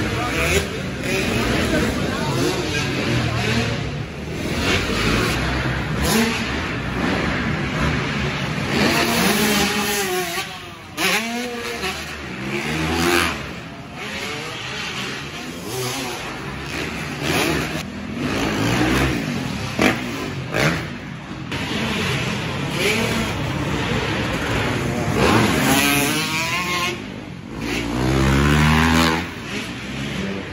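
Dirt bike engines revving on a motocross track, their pitch climbing and dropping again and again.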